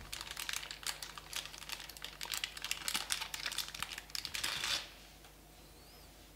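Packaging being handled, with a dense run of crinkles and small clicks that stops about five seconds in.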